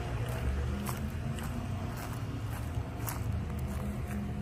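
Footsteps on a paver deck over the steady low hum of the running pool pump.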